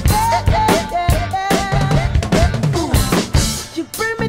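DW Maple Collector's drum kit with Zildjian cymbals played in a driving pop groove: kick, snare and cymbal hits. A recorded song with pitched melody lines plays underneath, and a bright cymbal wash comes near the end.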